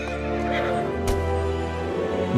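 A horse neighing briefly, about half a second in, over steady background music.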